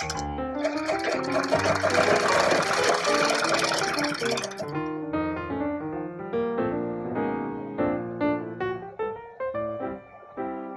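Background piano music, with a sewing machine stitching in rapid ticks from about half a second in until just before the halfway point.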